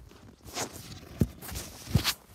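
Footsteps in snow: about four steps, each a short crunch, one of them a sharper thump near the middle.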